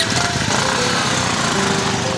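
Motorcycle engine running loud and rough as the bike pulls away.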